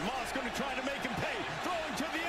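Low-level speech from a televised college football broadcast's commentary, over a steady background hiss.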